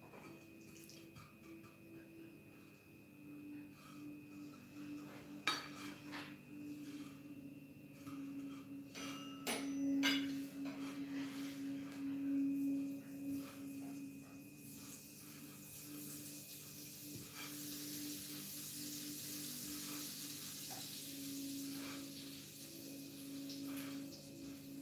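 Kitchen tongs clinking and scraping against ceramic bowls and a baking dish a few times as pork chops are dipped in egg and breadcrumbs, over a steady low hum. A soft hiss comes in a little past halfway and holds until near the end.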